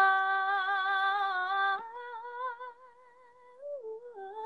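A woman's voice singing a cappella, holding one long note with a slight vibrato that slowly fades, then stepping up to a softer, higher held note about two seconds in.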